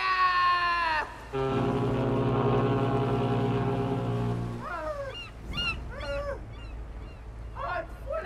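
A ship's horn sounding one deep, steady blast of about three seconds. It comes just after a high call sliding down in pitch, and it is followed by short high cries.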